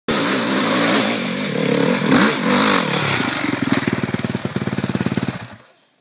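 Dirt bike engine revving hard as it climbs a steep hill, its pitch rising and falling, then dropping to an even, rapid putter that fades out about five and a half seconds in.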